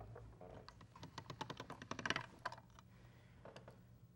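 Faint, irregular light clicks and taps of hands folding and pressing a sheet of polymer clay on a tile work board, densest in the first half and thinning out after about two and a half seconds.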